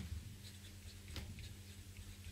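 Pen writing on paper: soft, faint scratching strokes as words are written out, over a low steady hum.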